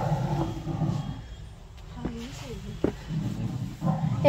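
Short snatches of a person's voice, with low bumping noises before and after.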